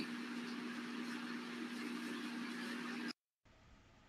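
A faint, steady low hum with background hiss, with no speech over it; it cuts off abruptly to dead silence about three seconds in.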